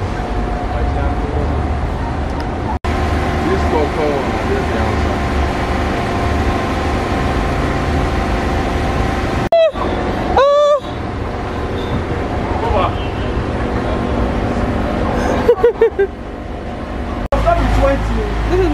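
A goat bleating twice, two short calls about a second apart, over a steady background hum.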